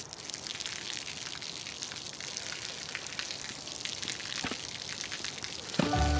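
A thin stream of water falling from above and splashing onto wet pavement: a steady spattering hiss full of small drop ticks. Music comes in just before the end.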